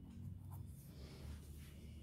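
Faint scratching of a pen writing a few short strokes on paper held on a clipboard.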